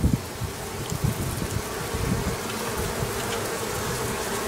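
Honeybees buzzing around an opened observation hive: a steady hum, with single bees droning close past, their pitch rising and falling.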